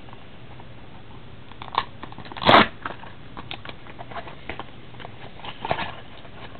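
A foil-wrapped pack of trading cards being handled and torn open by hand: a few short crackles and clicks, the loudest about two and a half seconds in.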